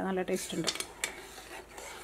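Metal spoon clinking against a steel saucepan while stirring a thin milk mixture, with a few sharp taps between about half a second and a second in.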